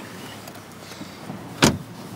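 A single short, sharp thump about a second and a half in, over a quiet background inside a car.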